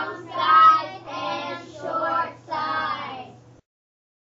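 Young children's voices singing in several short phrases, cut off abruptly about three and a half seconds in.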